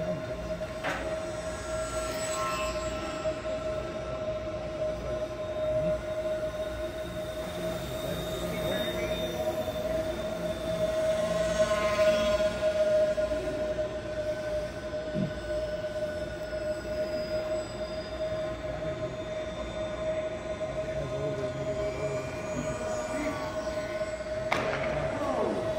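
Twin 10 mm brushless motors and propellers of a Rabid Models 28-inch Mosquito foam RC plane whining steadily in flight, growing louder about halfway through as the plane passes close.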